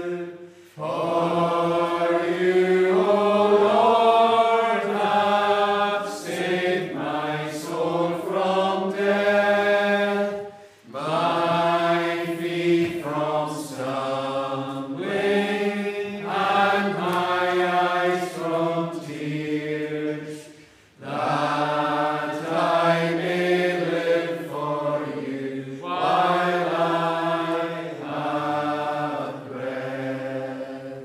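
A congregation singing a metrical psalm without instruments, in slow, drawn-out lines with a short pause for breath between each, about every ten seconds.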